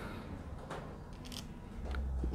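Folding knife blade slicing into the top edge of a tube of rolled paper standing on end: a few faint, crisp paper crackles and scrapes. It is a sharpness test, and the blade does not quite slice cleanly through.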